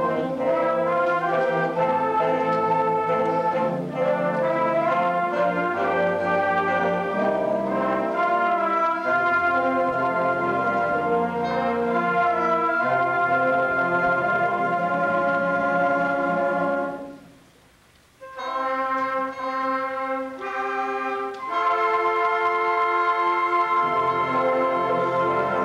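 A middle school concert band playing a piece, with flutes, saxophones and brass holding sustained chords. About two-thirds of the way through, the band stops for a moment, comes back in more thinly, and then plays at full strength again.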